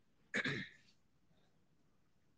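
A man briefly clearing his throat once, about half a second in.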